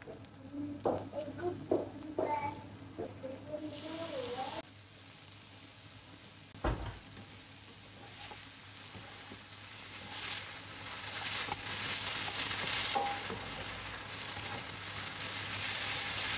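Sliced cabbage and pork stir-frying in a nonstick pan, sizzling with the taps and scrapes of a spoon and spatula. The sizzle grows louder through the second half, and there is one low knock about seven seconds in.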